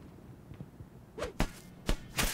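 Quick whip-like swish sound effects for an animated transition: two sharp swishes, about a second and a half in and again near the end, over faint room tone.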